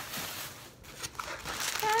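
Thin plastic shopping bag rustling and crinkling on and off as it is handled and items are put back into it.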